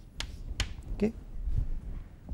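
Chalk striking a blackboard in two sharp taps, close together, as the last characters of a line are written.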